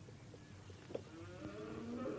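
A low, drawn-out animal call, starting a little past halfway and rising slowly in pitch as it grows louder, after a few faint clicks.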